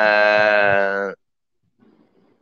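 A man's voice holding one long, steady note for about a second, sung or drawn out on a vowel, then breaking off sharply.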